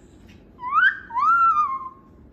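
Moluccan cockatoo giving two loud whistled notes: a short one rising in pitch, then a longer one that rises, holds and falls slightly at the end.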